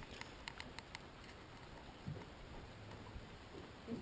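Fishing reel being cranked in, heard faintly: a few light clicks within the first second, then a low, quiet background.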